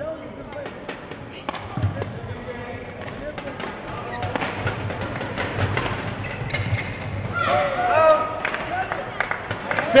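Badminton singles rally: the shuttlecock struck back and forth with rackets, with the players' footsteps on the court, growing louder toward the end.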